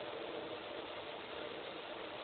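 Steady, even noise with no distinct events or tones, held at one level throughout.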